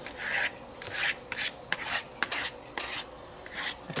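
A palette knife scraping and spreading acrylic paint across a painted paper journal page, in about ten short, irregular strokes.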